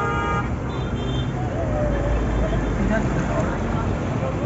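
A car horn held, cutting off about half a second in, then a steady wash of heavy rain and traffic noise on a flooded road, with a low rumble and people's voices.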